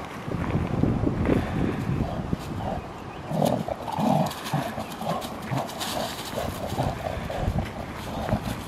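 Two Labrador retrievers play-growling as they tug at one ball between their jaws, in short repeated growls that come thickest in the middle. Their paws scuff and crackle on dry leaves.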